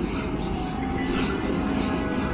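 Steady low mechanical rumble, vehicle-like, with faint sustained tones above it.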